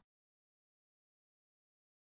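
Near silence: complete digital silence, with no room tone, in a pause between repetitions of a spoken word.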